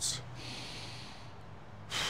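A man's breath, winded after a set of sandbag squat rows: a long breathy exhale lasting about a second, then a quick sharp breath near the end.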